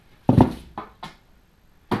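A single loud knock about half a second in, followed by two faint taps, as a freshly painted brake disc and a metal hook are handled.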